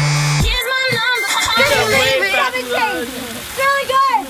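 Electronic dance music cuts off about half a second in. It gives way to people yelling and squealing as a hose's jet of water sprays over them, with the hiss and splatter of the spray underneath.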